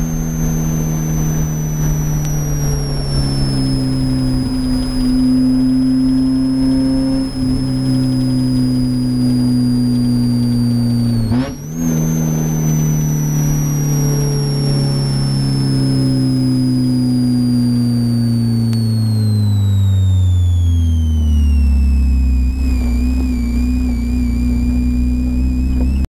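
Spec Miata's four-cylinder engine heard from inside the car while it coasts in at low speed after a session. The revs sink slowly, break off briefly about halfway and come back a little higher, then drop near the end to a low, steady run.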